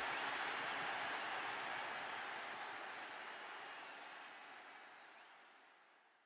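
Faint crowd applause and cheering fading out steadily over about four seconds until it is gone.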